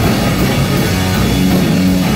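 A live blues band playing loud and steady: electric guitar, drum kit and Fender electric bass together.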